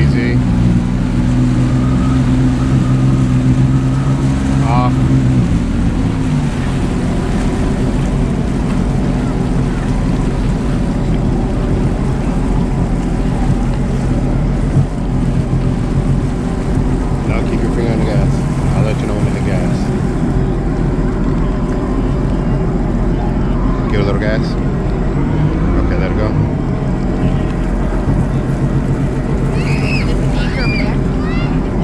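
Sea-Doo jet ski engine running at steady cruising speed, then throttled back about six seconds in and carrying on at a lower, steady drone, with water rushing and splashing around the hull.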